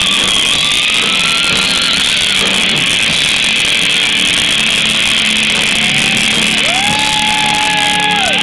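Live rock band playing loud, distorted electric guitars, bass and drums. Near the end, a lead guitar bends up to a held note and lets it fall.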